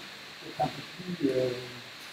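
Speech only: a man's voice at a lecture microphone, a brief sound and then a drawn-out hesitation sound held on one pitch, over a steady background hiss.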